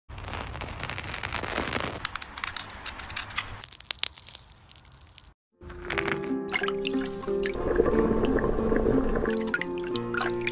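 Close crackling and rustling of a dry silk cocoon being picked at with metal tweezers for about five seconds. After a brief cut to silence, light background music with steady notes takes over, with a few small clicks and splashes under it.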